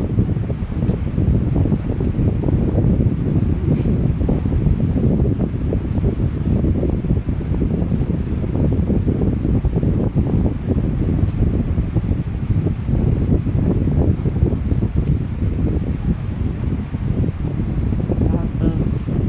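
Steady, loud low rumble of air buffeting the microphone.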